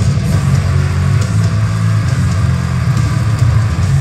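Live metalcore band playing loud, with distorted electric guitars, drums and a heavy low end.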